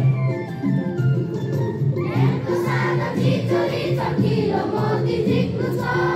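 A group of schoolchildren singing the school song together over sustained held notes, the voices growing fuller about two seconds in.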